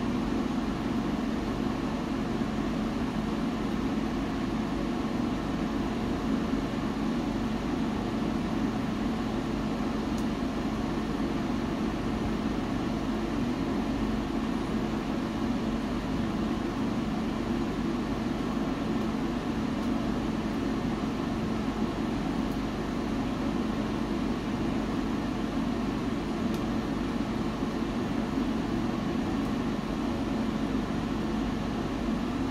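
A wood-burning stove with logs burning behind its closed glass door: a steady low rumble, with a few faint ticks.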